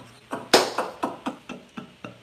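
A man laughing heartily in a run of short breathy bursts, about four a second, loudest about half a second in.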